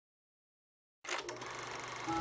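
Silence, then about halfway through a small film projector starts up with a click and runs with a steady, rapid mechanical clatter.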